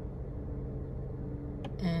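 Steady low drone of a vehicle's engine and road noise, heard from inside the cabin, with a faint click shortly before the end.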